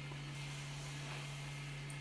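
Steady low hum with a faint hiss and no distinct events.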